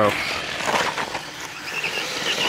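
Losi Promoto MX RC motorcycle running through a tight turn on loose dirt and gravel: a steady hiss of its tyres sliding and scattering grit, with a faint electric motor whine. At full gyro the bike slides wide in the turn.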